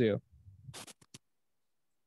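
Stylus writing on a tablet screen: a short, faint scratch followed by two quick taps.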